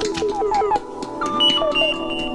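Electronic music: a quick run of short synthesizer blips, each note dipping slightly in pitch, over held steady tones, with higher beeping notes held in the second second.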